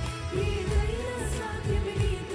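Telugu Christian worship song performed live: a singer holds a wavering melody line over a band with bass and a steady drum beat.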